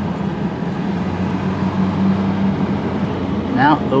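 Steady road and engine noise inside a moving car's cabin, with a constant low hum.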